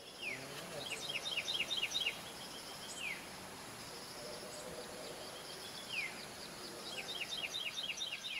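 Birds singing: repeated runs of short high chirps and a few downward-sliding whistles, over a steady background hiss.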